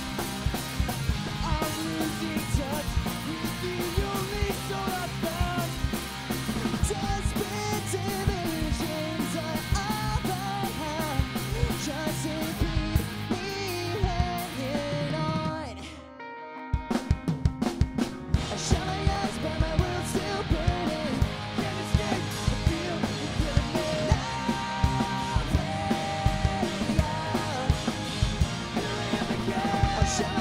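Pop-punk band playing live: distorted electric guitars, bass guitar, drum kit and sung lead vocals. About sixteen seconds in the band stops for a moment, then comes back with a few separate drum hits before the full band picks up again.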